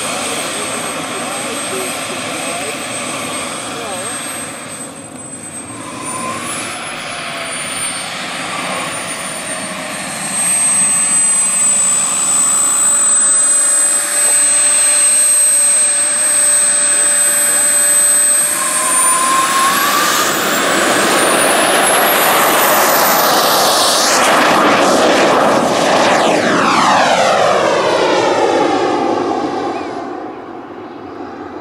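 Turbine engine of a large RC scale Mirage 2000C model jet whining steadily at taxi power, then spooling up with a rising whine for the takeoff run. The sound grows loud as the jet passes, then takes on a sweeping, phasing tone as it climbs away.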